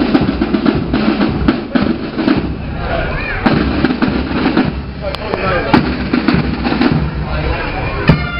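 A marching band's side drums playing a steady parade beat in unison, with loud, rapid drum strokes throughout.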